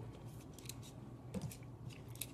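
A few faint clicks and light scrapes from small metal kitchen tongs working onion rings through thick batter in a stainless steel bowl.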